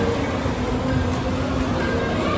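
Steady din of a large, crowded dining hall: faint distant voices over a constant rumble and hiss.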